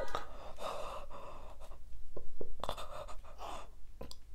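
A woman gasping and breathing heavily through an open mouth full of edible chalk, in two long breaths with a few short crunchy clicks of chewing between them. She is reacting in distress to the chalky taste.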